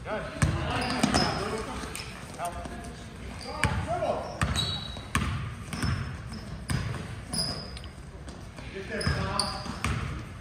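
A basketball bouncing repeatedly on a gym floor as it is dribbled, with short high sneaker squeaks, all echoing in a large gym.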